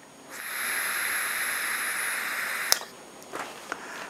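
A vape draw through a Golden Greek Amadeus rebuildable atomizer on a box mod: a steady airy hiss with a faint high whine for about two and a half seconds, cut off by a sharp click. A few faint ticks follow near the end.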